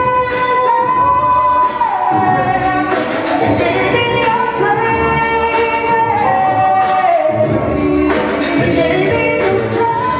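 Male a cappella group singing live in close harmony, held chords moving under a lead voice, over a steady vocal-percussion beat.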